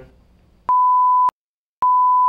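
Electronic beep tone, a steady pure high-pitched tone sounding twice: a short beep about two-thirds of a second in, then dead silence, then a longer beep starting near the end.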